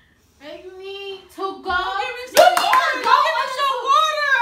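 Loud, drawn-out wordless vocal cries that waver in pitch and grow louder through the second half, with a quick burst of sharp hand slaps about two and a half seconds in.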